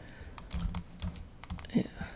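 Computer mouse buttons clicking, several short, sharp clicks a fraction of a second apart, as brush strokes are painted.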